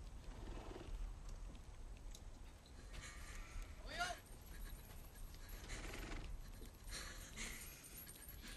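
Faint outdoor livestock sounds, with a short horse whinny about halfway through.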